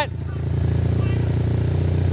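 An engine running steadily at constant speed: a loud, low drone with a rapid even pulse, loud enough that speech is hard to hear over it.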